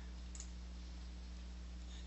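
A single faint computer mouse click about half a second in, over a steady low electrical hum.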